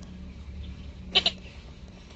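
Treasure Hunter metal detector giving one short target tone about a second in, over a faint steady hum.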